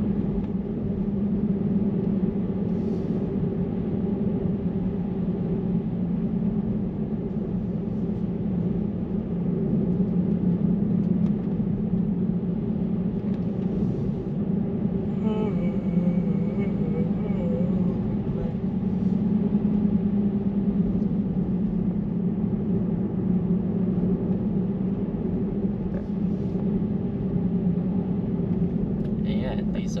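Steady road and tyre noise of a moving car heard inside the cabin, a constant low hum.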